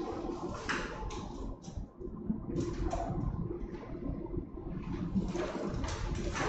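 Paper case files being handled, with irregular rustling and short handling noises.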